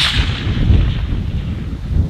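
Echo of a long-range sniper rifle shot fired a moment earlier, rolling away and fading over about a second, over a steady low rumble of wind on the microphone.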